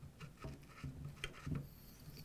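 Faint handling sounds of hands feeling over a PCP air rifle: light rubbing and a few soft taps on its air bottle and wooden stock.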